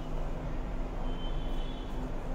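Steady low background rumble and hum, with a faint high-pitched tone for about a second in the second half.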